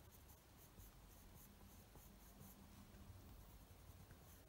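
Faint scratching of a watercolour pencil colouring on card, barely above room tone.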